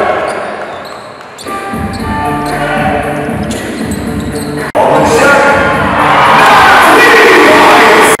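Basketball dribbled on a hardwood court in a large indoor hall, with voices and arena music behind it. The sound changes abruptly about a second and a half in and again near five seconds.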